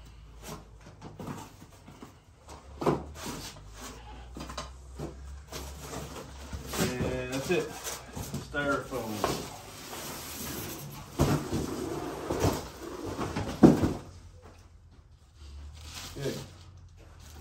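Large cardboard shipping box being worked open and pulled off a folding table: cardboard rustling and scraping with repeated knocks, and a sharp thump a couple of seconds before the end.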